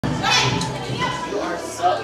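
Children's voices shouting and chattering in a large room, with music playing faintly underneath.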